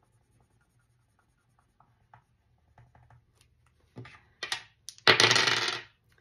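Faint scratching of a pen on a paper game sheet, then a few sharp clicks and a pair of small dice rolled and clattering across a hard tabletop for just under a second near the end.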